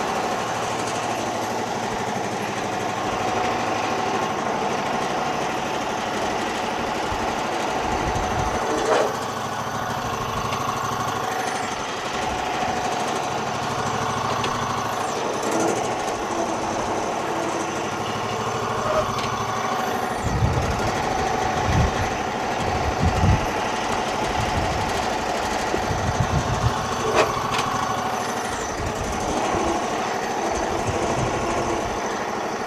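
Garden tractor engine running steadily as the tractor is driven slowly, with irregular low thumps in the last third.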